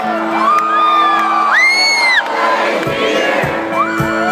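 Live rock band playing, heard from within the concert crowd: steady held notes, with audience members whooping and singing along, including a long high whoop about two seconds in. Low drum beats come in near the end.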